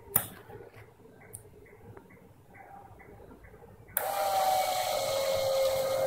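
A sharp click right at the start, then faint regular ticking at about three a second. About four seconds in, the robot's 12-volt submersible water pump switches on and runs with a steady whine and a hiss of water pushed through its tube.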